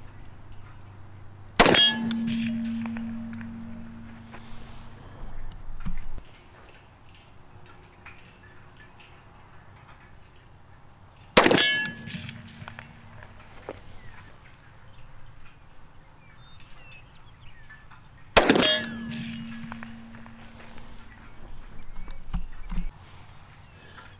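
Three 10mm pistol shots several seconds apart, each followed by the clang of a hanging steel silhouette target ringing for a second or two: each shot is a hit on the steel.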